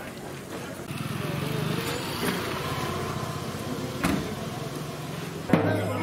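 Street noise with a steady low hum and voices, and a single knock about four seconds in. Near the end, temple procession music strikes up loudly: a nadaswaram melody over drone and thavil drum.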